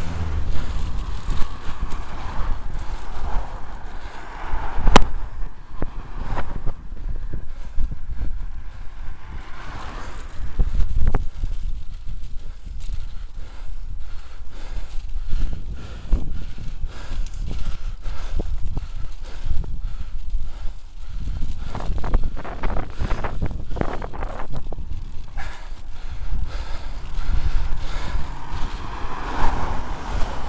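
Wind buffeting the microphone of a bicycle-mounted camera, with road rumble from riding along a main road. Motor vehicles pass close by near the start and again near the end, the last a van overtaking with its engine audible, and there is one sharp click about five seconds in.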